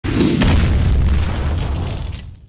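Cinematic boom sound effect: a sudden deep hit with a sharp crack about half a second in, then a heavy low rumble that holds and starts to fade near the end.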